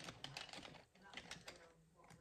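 Faint, irregular light taps and rustles of paper and a notebook being handled on a cutting mat.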